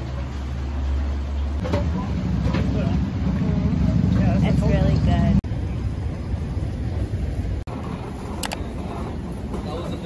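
Outdoor ambient sound: a steady low rumble with people's voices talking faintly in the background, changing abruptly at the cuts between short clips.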